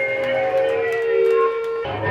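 Live punk band: long, wavering siren-like electric guitar feedback tones ring over the stage, then the full band comes in with a low distorted guitar chord just before the end.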